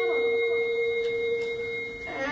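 Sound-system feedback ringing: a steady tone held at a few fixed pitches through a pause in the Quran recitation, fading slightly toward the end. The child's reciting voice glides down and trails off at the start.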